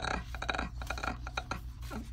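Glossy sticker sheets rustling and crackling as they are handled and slid apart, a quick run of small crisp crackles.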